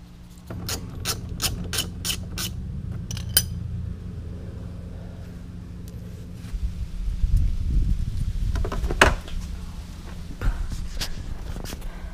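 Hand-tool work under a car's front bumper: a run of about ten evenly spaced clicks, about three a second, then rubbing and knocking, with one sharp knock about three-quarters of the way through.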